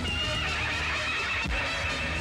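A horse whinnying, one long wavering call over background film music, with a low thud about one and a half seconds in.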